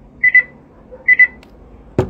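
An electronic device beeping: a short, high double beep, twice, about a second apart. A sharp click comes near the end.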